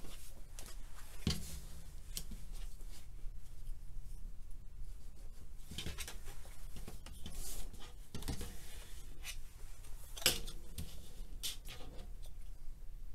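Handling sounds on a cutting mat: fabric being moved, a clear plastic quilting ruler set down and shifted, and yellow tailor's chalk scraping as it marks the fabric. A few light knocks stand out, the loudest about ten seconds in.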